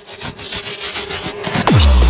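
Hardcore (gabber) electronic music: a quiet passage of rapid clicks over a faint held tone. Near the end a pitch sweep drops steeply into a loud, deep bass.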